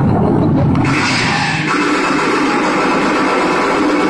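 Loud recorded soundtrack played over loudspeakers in a hall. Bass-heavy music changes about a second in to a steady, noisy rush with little bass.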